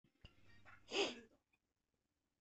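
A single short, breathy burst from a person about a second in, lasting about half a second.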